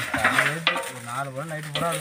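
Dry leaves rustling and crackling as handfuls are dropped into a large aluminium basin, under a man's voice.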